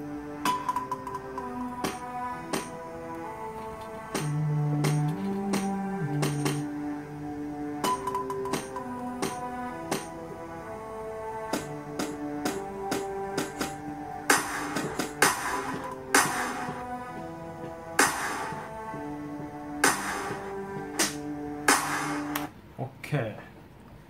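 Playback of a work-in-progress electronic beat: a looping melody of steady notes over low bass notes, with light clicking percussion throughout. From about the middle on, sharp noisy drum hits join in, roughly one a second, until the playback stops shortly before the end.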